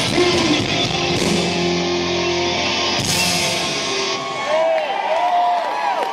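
A live heavy metal band ends a song: distorted electric guitar holds a final chord, a last hit lands about halfway through, and then the crowd cheers and whoops as the music stops.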